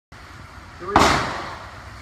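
A .36 caliber Tip Curtis flintlock rifle with a Siler left-handed lock fires once about a second in. The single sharp report rings out over about half a second. A FFFFg priming charge gives it a fast lock time, so the pan flash and the main charge run together.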